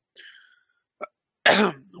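A man coughs once, a short sudden cough near the end, after a faint breath and a small mouth click.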